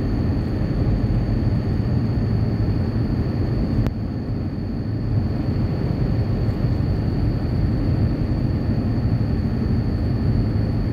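Steady low rumble of a van driving on the road, engine and tyre noise, with a thin high steady tone over it. A single sharp click comes about four seconds in.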